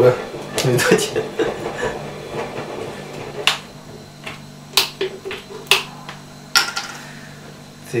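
Screw cap being twisted off a 2-litre plastic bottle of fizzy cola: a few sharp clicks about a second apart, then a brief hiss near the end.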